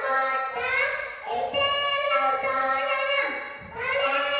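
A young boy chanting a shloka in a sing-song voice, in short phrases of held notes with a brief pause for breath about three and a half seconds in.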